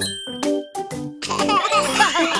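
Bright ding sound effect at the start, ringing over the instrumental backing of a children's song. Quick warbling, wobbling glides follow in the second half.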